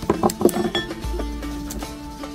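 Small hammer knocking on stone slabs, a quick run of sharp knocks in the first second, over background folk music with a plucked string instrument.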